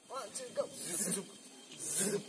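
A brief faint voice, then soft hissing noise that turns sharper and higher near the end.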